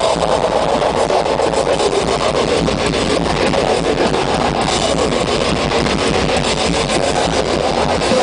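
Metal band playing live through a large PA: heavily distorted guitars over fast, dense drumming, recorded so loud that it comes through as one thick, clipped wall of sound.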